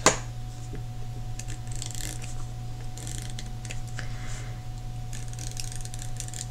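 A hand-held correction tape dispenser being run across planner paper in a few short strokes, its small gears ticking and the tape scraping, over a steady low hum.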